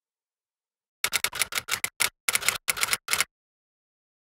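A rapid, uneven run of about a dozen sharp clicks over roughly two seconds, starting about a second in.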